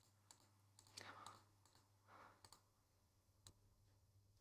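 Near silence, with a few faint, scattered computer mouse clicks as spline points are placed on screen.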